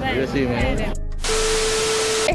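TV-static transition sound effect: a burst of loud white-noise hiss with a steady beep tone under it, coming in abruptly just after a second in following a brief drop-out.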